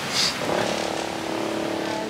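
Wind rushing over the microphone, joined about half a second in by a steady droning tone that holds one pitch for about a second and a half.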